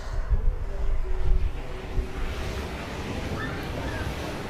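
Wind buffeting the microphone, with ocean surf washing in the background and swelling about halfway through.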